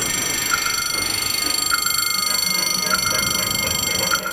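A warning signal at a lowered swing-bridge barrier, sounding a short pitched tick-like ring about every 1.2 seconds, each a quick double or triple strike, over a steady high whine.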